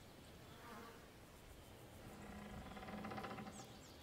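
Faint buzzing of a flying insect: a low, steady hum that grows louder in the second half.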